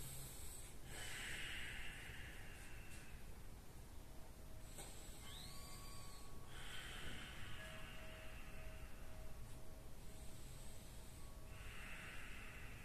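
A person breathing slowly and deeply, about three faint breaths, each a soft rush of air two to three seconds long.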